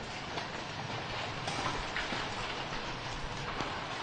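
Steady outdoor rushing noise with a few faint knocks.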